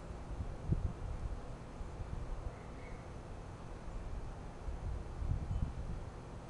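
Wind buffeting the microphone: a low rumble with stronger gusts about a second in and again near the end.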